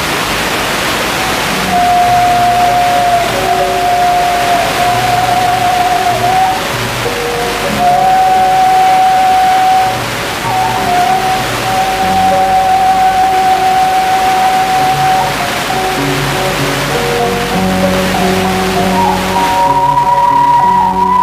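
Instrumental background music: a slow melody of long held notes over low bass notes, with a steady rushing hiss beneath.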